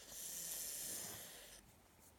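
A person's long hissing breath, drawn or blown through the teeth, lasting about a second and a half and fading out.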